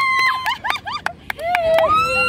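Women's excited voices: a long high-pitched squeal that breaks off about half a second in, then a rising cry near the end, with quick sharp hand claps through it as the game is won.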